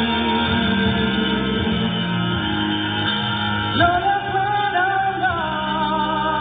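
A song sung live over guitar accompaniment. A little past halfway the voice rises to higher, held notes with vibrato over sustained chords.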